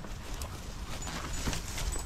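Footsteps and rustling through long grass and undergrowth, a scatter of soft crunches and ticks, over a low rumble of wind on the microphone.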